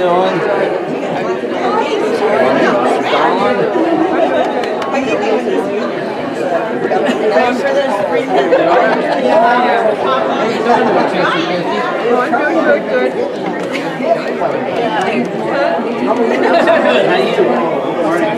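A congregation chatting and greeting one another, many voices talking over each other at once in a church sanctuary.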